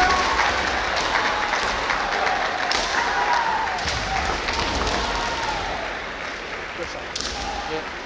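Busy kendo arena: a dense wash of crowd noise and distant shouting, broken by a few sharp knocks typical of shinai strikes or foot stamps on the wooden floor. It eases off a little toward the end.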